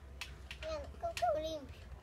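A young child's voice making a short, wordless vocal sound, with a couple of small clicks of handled parts.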